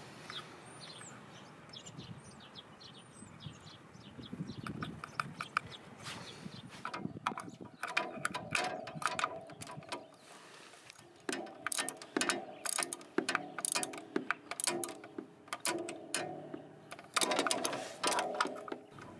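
A socket ratchet with a 12 mm socket clicking in quick runs as it runs down the oil fill bolt on a Honda Forza 300's final drive case. The clicking starts about seven seconds in and comes in several bursts with short pauses between strokes.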